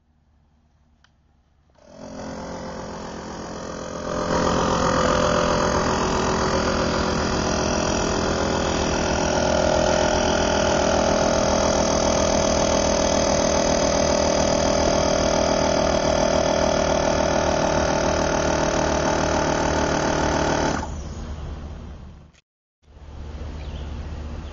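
Portable battery-powered air pump running steadily, filling the air reservoir of a pneumatic antenna launcher. It starts about two seconds in, gets louder about two seconds later, and stops shortly before the end.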